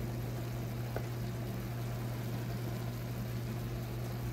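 Ground beef and tomato paste sizzling in a saucepan over a steady low hum, with one light tick about a second in.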